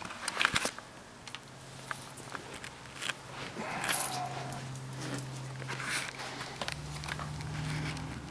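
Handling noise: scattered clicks, rustles and scrapes as the camera is moved about. A faint steady low hum joins about halfway through.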